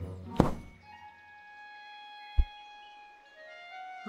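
Animated-film soundtrack: soft orchestral music with long held notes, broken by two sudden thuds about two seconds apart. The first is loud and rings on; the second is short and deep.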